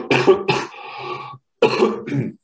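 A man coughing several times in a short fit. There is a brief break before a last cough near the end.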